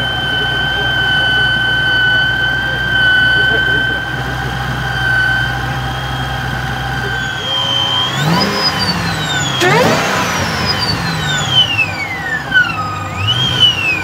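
2011 Shelby GT500 Super Snake's supercharged 5.4-litre V8 idling with a steady high supercharger whine, then revved three times in the second half. With each rev the whine climbs sharply in pitch and glides back down as the revs fall; the middle rev is the highest and falls away slowest.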